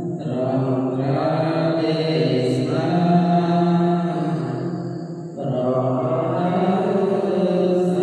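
Khmer Buddhist monks chanting a devotional recitation together, a low, near-monotone chant held in long phrases, with a brief breath pause about five seconds in.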